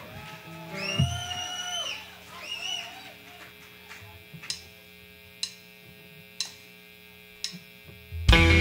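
A drummer's count-in: four sharp drumstick clicks, about a second apart, over a steady amplifier hum. Before them come a couple of short, high held tones in the first three seconds.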